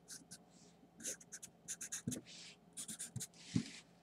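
Felt-tip marker drawing on paper: a quick run of short scratchy strokes hatching in an area, with a few longer strokes and light taps of the pen tip.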